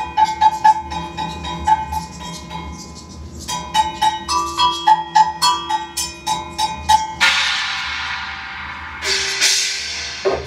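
Percussion played on a large drum kit and percussion setup: a quick run of pitched, bell-like strokes, then two cymbal crashes that ring out, about seven and nine seconds in.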